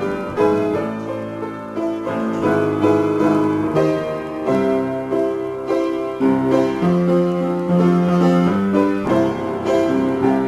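Solo piano improvisation, played without a break: sustained chords in the low and middle register with a melody moving over them.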